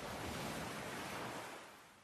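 Faint sea waves washing on the shore, a steady hiss of surf that fades out near the end.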